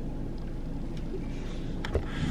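A pause in talk inside a car cabin: a steady low rumble with faint hiss, and one short click near the end.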